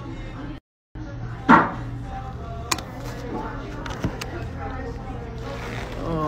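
Background music and voices, with a few sharp knocks; the loudest knock comes about a second and a half in. The sound drops out completely for a moment near the start.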